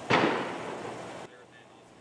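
News-broadcast transition sound effect: a whoosh with a sudden hit about a tenth of a second in, fading away over about a second.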